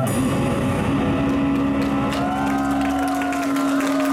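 Live pop-rock band music through an outdoor PA at the close of a song: a long held low note runs from about a second in, with the singer's voice gliding faintly above it.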